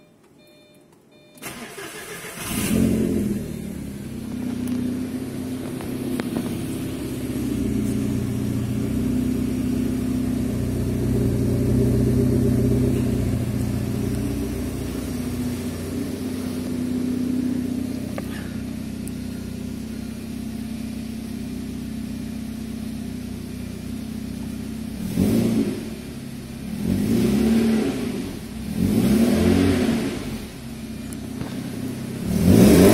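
Porsche 968's 3.0-litre four-cylinder engine starting from cold: it cranks and catches about two seconds in, flares, then settles into a steady fast cold idle. Near the end it is revved three times in short blips.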